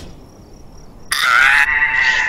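After a quiet moment, a loud, high-pitched wavering cry starts about a second in and holds.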